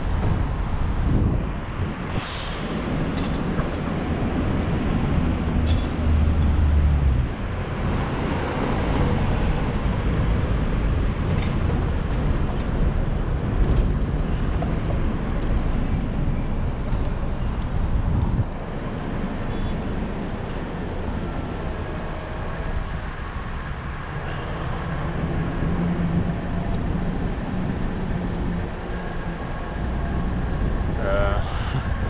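City street traffic at an intersection: a steady wash of car and engine noise from passing and waiting vehicles. A heavier low engine rumble swells about six seconds in, and another steady engine hum comes in near the end.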